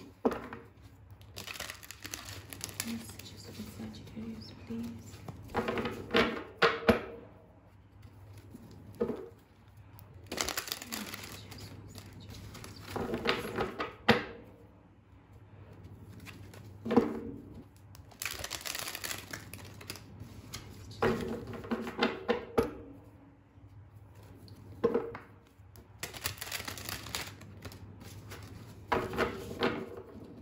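A deck of tarot cards being shuffled by hand: repeated papery riffling bursts of one to two seconds with short pauses between, and a few sharper clicks of cards knocking together.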